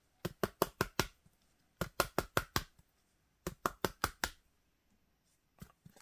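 Quick sharp taps or clicks in three bursts of about five each, roughly six a second, each burst lasting under a second, with a couple of faint clicks near the end.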